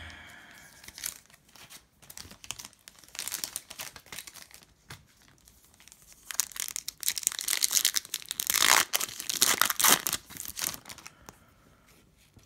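Foil wrapper of a Panini Prizm football card pack crinkling and tearing as it is opened by hand: light crackles at first, then louder, denser crinkling and tearing from about halfway through, dying away near the end.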